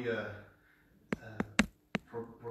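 A man's voice holds a sung note that fades out within the first half second; after a short pause come four sharp taps in quick succession, the loudest about a second and a half in.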